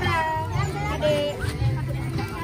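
Young children's high-pitched voices calling out and chattering, with a thin, whiny, meow-like quality, over music with a steady, blocky bass.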